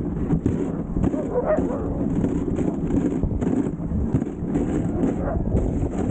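Dog sled running over a packed snow trail: a steady rumble and scrape from the runners with frequent small bumps and knocks, and wind buffeting the microphone.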